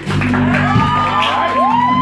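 Live jazz band: a saxophone plays a melodic phrase with sliding notes, settling into a long held note near the end, over electric bass and drums.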